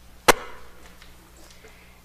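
A single sharp knock about a third of a second in, followed by a faint ringing tone that dies away within about a second.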